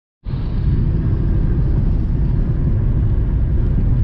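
Steady low rumble of a car's engine and tyre noise heard from inside the cabin while driving at highway speed on a wet road. It starts abruptly just after the beginning and then holds level.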